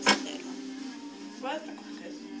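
A single sharp knock close to the microphone just after the start, over background speech and music with steady held notes.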